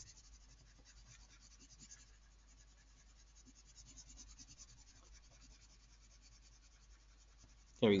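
Orange coloured pencil scratching quickly back and forth on paper, shading in an area. It is faint.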